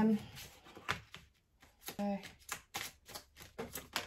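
Tarot cards being drawn from a handheld deck and flicked out, a series of sharp, irregularly spaced card clicks. A short vocal sound about two seconds in.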